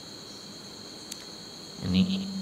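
A steady high-pitched tone, with a fainter, still higher one above it, over a low hiss; a small click about a second in.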